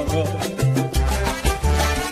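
Salsa romántica recording in an instrumental stretch between sung lines: a bass line moving note to note about every half second under steady percussion strokes and pitched instrumental parts.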